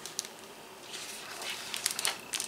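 A page of a large picture book being turned: a soft paper rustle with a few light clicks.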